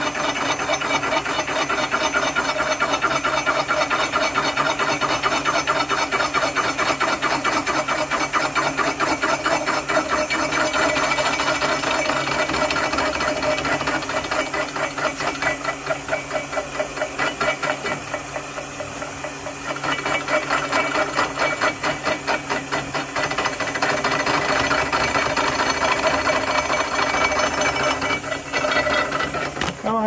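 Milling machine face mill taking a light cut across steel angle iron: a steady, fast rhythmic chatter of the cutter's teeth on the metal. It gets quieter for a few seconds in the middle, then picks up again.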